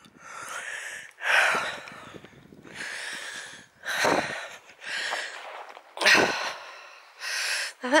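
A person breathing heavily and audibly close to the microphone while walking, about seven breaths in and out, each a second or so apart.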